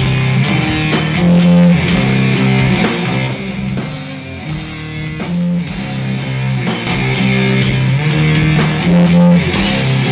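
Instrumental psychedelic stoner rock played live by a bass, electric guitar and drum kit trio: the bass holds long low notes under the guitar while drums and cymbals strike steadily. The band eases off and the cymbals drop out for a moment about four to five seconds in, then the playing builds back up.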